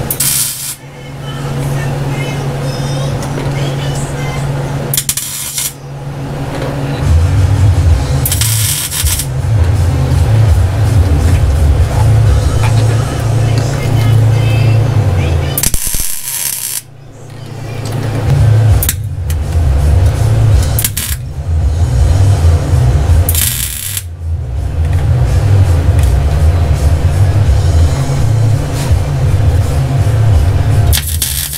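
Background music with a steady bass line, broken about five times at irregular intervals by short bursts of MIG welding crackle, each under a second long.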